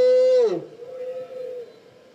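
A man's shouted rally call 'oye!', held on one long steady note that drops in pitch and ends about half a second in. A fainter held voice follows until about a second and a half in.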